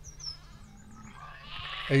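Faint, short, high falling chirps of small birds, then just before the end a ewe starts bleating loudly in a wavering call: a ewe calling for her lamb.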